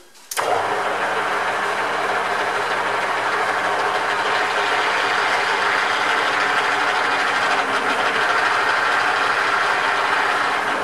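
Small metal lathe switched on, its motor and drive starting suddenly just after the start and then running steadily at speed with several steady tones.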